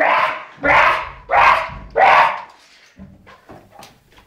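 A drunk young man letting out four loud, rough, bark-like shouts in quick succession, strange non-word yells that the uploader puts down to the alcohol. Faint knocks follow near the end.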